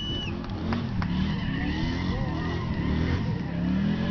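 Pickup truck doing a burnout, its engine held high and wavering while the spinning tires squeal with a thin steady tone for a couple of seconds.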